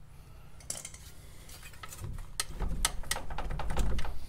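Scattered light metallic clinks and knocks, about half a dozen, as the front spindle and heavy brake rotor assembly is wiggled by hand and slides down off the bottom of the strut, with a low rumble in the last second or so.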